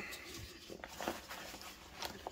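Faint rustling of nylon pack fabric and webbing being handled, with a few light clicks of a plastic buckle.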